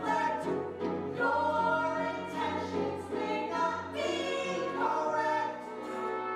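Musical-theatre singing by stage actors, with held sung notes, accompanied by a live pit orchestra.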